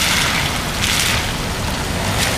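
Car on the move: steady road and tyre noise with wind rumbling on the microphone.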